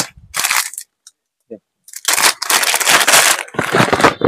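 Plastic and foil packaging crinkling and rustling as boxes of hair clips are handled, a short rustle near the start and a longer dense crinkling burst of about a second and a half in the second half.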